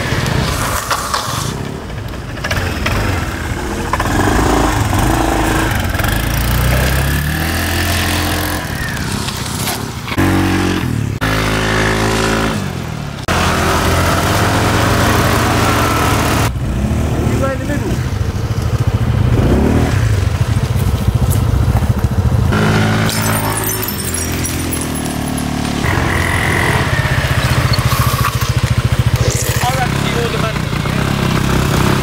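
A motor scooter's small engine revving and running as it is ridden.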